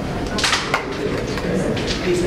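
Steady background murmur of several people talking in a hall, with a few short sharp clicks, the clearest about half a second in.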